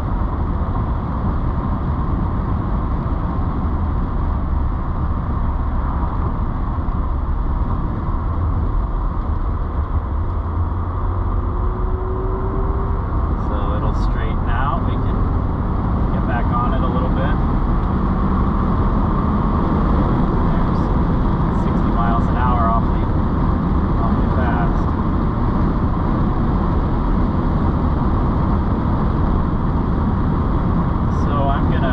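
Steady in-cabin road and engine noise of a Mercedes-Benz 560SL's V8 cruising at moderate speed on a winding road: a constant low rumble with tyre noise, growing a little louder about halfway through.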